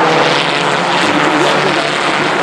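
Engines of a pack of Škoda Octavia Cup race cars running hard through a corner, a steady drone whose pitch wavers as the cars lift and accelerate.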